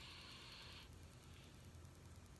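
Near silence: faint room tone with a low steady hum and a faint hiss that stops a little under a second in.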